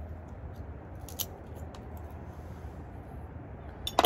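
Cigar cutter giving a cigar a straight cut: a short, sharp snip about a second in, with a few faint handling clicks and another click at the very end, over a steady low background rumble.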